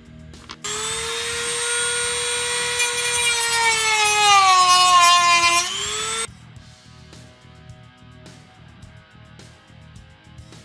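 Handheld rotary tool with a cutoff wheel whining as it cuts a switch opening into a plastic dash bezel. The pitch sags as the wheel bites, climbs back, and the tool stops suddenly about six seconds in. Background music with guitar plays throughout.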